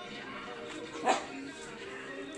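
A dog barks once, short and sharp, about a second in, over faint background music.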